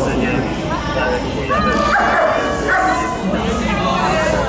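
A poodle barking several times in short high-pitched calls, over people talking nearby.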